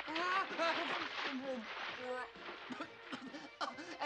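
A splash of water in the first second or so as a heavy man flails and goes under, with his cries and yelps over it.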